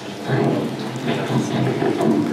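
Audience applauding, a dense crackle of many hands clapping.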